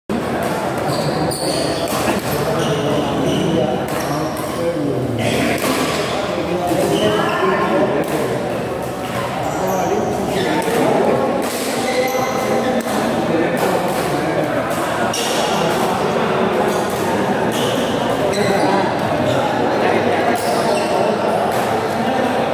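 Badminton rackets striking a shuttlecock during rallies, sharp hits at irregular intervals that ring in a large echoing hall, over steady background voices.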